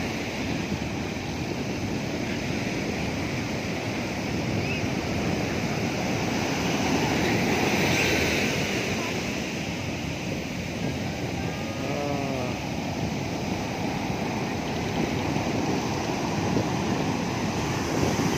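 Heavy surf breaking on a sand beach: a steady wash of waves that swells around the middle. A brief faraway call of a person's voice rises over it about twelve seconds in.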